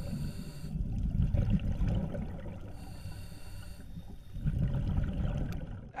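Underwater ambience: a low, rumbling water noise that swells about a second in and again near the end.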